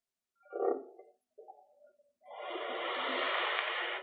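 Felt-tip marker scratching on paper: a short stroke about half a second in, then a longer, steady scratching of nearly two seconds near the end.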